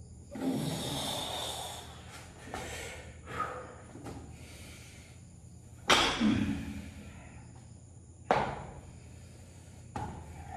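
A weightlifter breathing hard with forceful exhales during barbell deadlifts, and the bumper-plated barbell thudding down onto foam floor mats twice, about six and eight seconds in.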